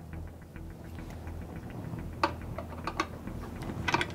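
Nut driver working a burner's spline nut: a few short, sharp metallic clicks and taps, the clearest about two seconds in and near the end, over a low steady hum.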